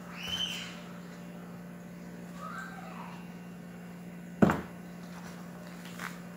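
Two short rising-and-falling animal calls, a high one at the very start and a lower one near the middle, over a steady low hum. One sharp knock comes about four and a half seconds in and is the loudest sound.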